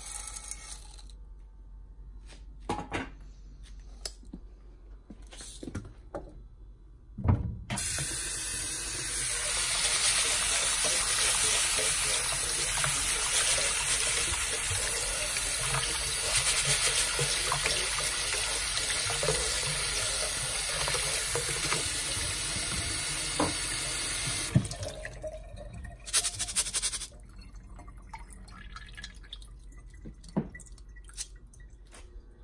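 Kitchen tap running water over mung beans in a metal mesh strainer, rinsing them into a bowl in a steel sink. The tap comes on about eight seconds in, runs steadily for around sixteen seconds and shuts off, with a few light knocks and clinks before and after it.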